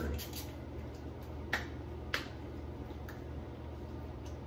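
Hands slapping aftershave splash onto a freshly shaved face: a few sharp pats close together at the start, then single pats about a second and a half, two seconds and three seconds in.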